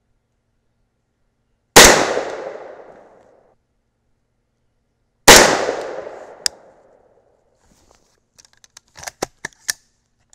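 Two rifle shots from an unsuppressed AR-style rifle in 300 AAC Blackout firing 220-grain subsonic handloads, about three and a half seconds apart. Each shot is very loud and rolls away in an echo lasting about a second and a half. A few light clicks follow near the end.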